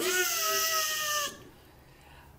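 A man's voice imitating the whine of a dentist's drill: one slightly falling, high whine with a hiss over it, lasting just over a second.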